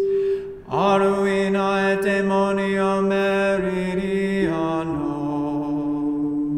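Unaccompanied Gregorian chant sung in long held notes. There is a short break for breath about half a second in, and the pitch steps down twice in the second half.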